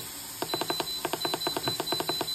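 Instant Pot Duo control panel giving a quick, even run of short electronic beeps as the time-adjust button is pressed repeatedly, each beep stepping up the pressure-cook time.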